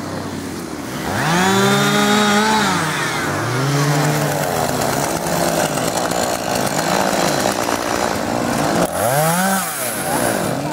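Two-stroke chainsaw revving up and back down several times: a high rev held for over a second near the start, a shorter one a few seconds later and another near the end.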